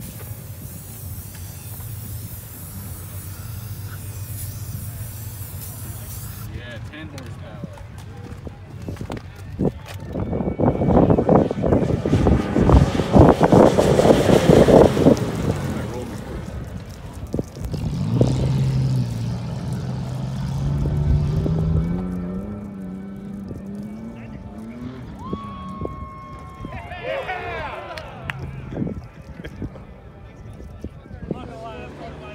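An aerosol spray-paint can hissing while a stencil is painted; it stops after about six seconds. Then a 1997 Nissan Pathfinder's V6 running hard on a dirt track: a loud pass with tyres churning gravel, then the engine revving up with a rising pitch.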